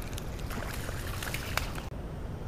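Spinning reel being cranked to bring in a hooked fish: a few faint, irregular clicks over a steady low rumble of handling noise.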